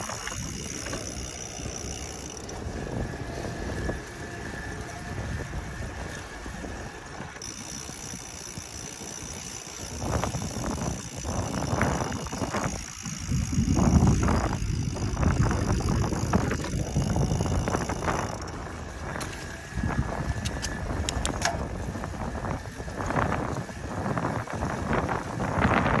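A 2020 Specialized Vado Turbo e-bike riding along a paved path: tyres rolling and wind buffeting the microphone, strongest midway. Scattered sharp knocks come in the second half as the bike rolls over bumps and joints in the path.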